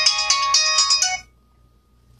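Mobile phone ringtone playing a bright electronic melody, which cuts off a little over a second in.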